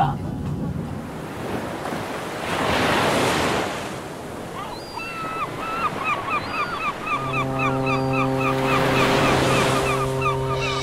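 Ocean waves washing in swells, with gulls crying over and over from about five seconds in and a long, low ship's horn sounding from about seven seconds in. Together they make a harbour sound-effect intro to a song.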